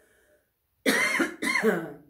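A woman coughing twice in quick succession, starting a little under a second in.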